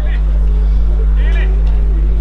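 A loud, steady low motor hum throughout, with distant players' voices and one shout from the pitch about a second in.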